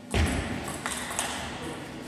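A heavy thud just after the start, then a table tennis ball clicking sharply several times.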